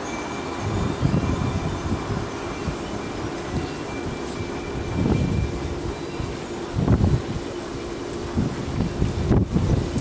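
Wind buffeting the microphone in irregular low gusts, over a steady background hum.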